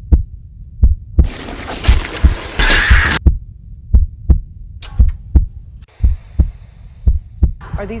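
Deep heartbeat-like thumps, about two a second, as a film sound effect. A harsh burst of hiss runs through the first few seconds and a faint hum through the second half.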